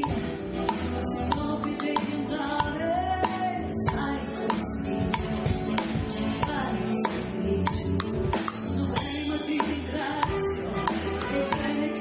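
Italian liscio dance band playing live: a woman sings into a microphone over saxophone, trumpet and a steady drum beat.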